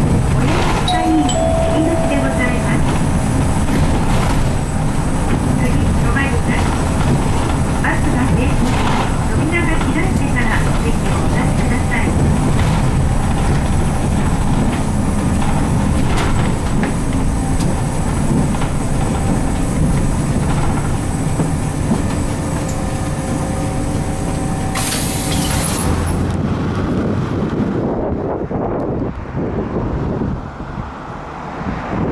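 Cabin sound of a Nissan Diesel U-RM210GSN route bus under way: its FE6 six-cylinder diesel engine running steadily under road noise, with rattles from the body. About 26 seconds in the sound changes to outdoor traffic with wind on the microphone.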